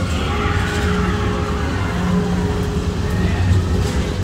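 Steady low rumble of amusement-ride vehicles running on track in an enclosed ride building, with a faint steady hum and a few faint sliding tones early on.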